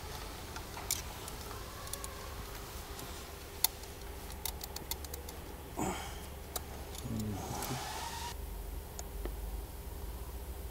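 Scattered light metallic clicks and taps of hand tools and engine fittings being handled, with a sharp click about three and a half seconds in and a cluster of quicker ticks soon after, over a low steady workshop hum.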